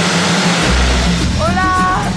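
Steady road noise of a moving car, with background music coming in over it: a deep bass from about half a second in and a rising, then held, note near the end.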